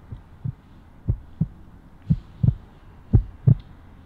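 Heartbeat sound effect: pairs of low thumps, a lub-dub about once a second.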